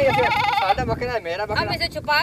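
A goat bleating: one long, quavering call at the start, followed by people talking.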